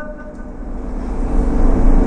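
A low rumble that grows steadily louder through the pause, over a faint steady hum, after the last syllable of a man's speech dies away at the start.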